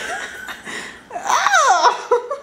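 People laughing, loudest in the second half as a high laugh that wavers up and down in pitch.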